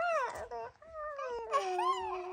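A young child whining in a baby-like voice: a short rising-and-falling whimper, then a long drawn-out whine that slides slowly down in pitch.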